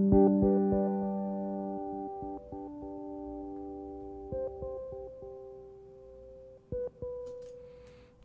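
Sampled piano from Fluffy Audio's Aurora Kontakt library playing a chord and then a few single notes that ring and slowly die away, sounding through a high-pass filter whose cutoff is being stepped by a step modulator.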